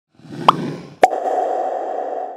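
Logo-animation sound effect: a short rising pop about half a second in, then a sharp click about a second in that opens into a steady held tone running on.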